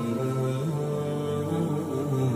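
Low male voices chanting an Islamic religious recitation in long, drawn-out notes that step from pitch to pitch.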